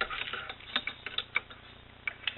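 A quick run of light clicks and taps, about half a dozen in a second and a half, as a small homemade prop built from a plastic mint tin is picked up off a granite countertop and handled.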